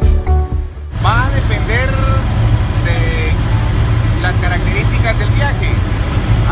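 Music that cuts off about a second in. It gives way to the steady low drone of a helicopter cabin in flight, with a man talking over it.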